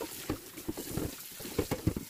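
A cast iron skillet being scrubbed with a dish brush under a running tap in a stainless steel sink: water running and splashing, with irregular low knocks and bumps from the brush and pan, the loudest a quick cluster near the end.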